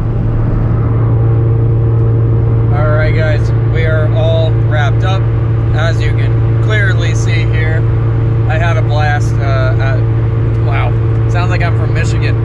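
Car at steady highway cruise heard inside the cabin: a loud, even low drone of engine and road noise, with a few steady tones above it.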